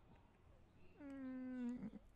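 Near silence, then about a second in a faint, short, drawn-out vocal sound, held on one note that sinks slightly in pitch before it stops.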